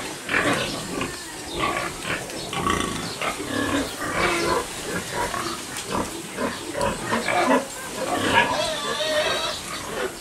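Pigs grunting and squealing in a piggery, a steady run of short, irregular calls.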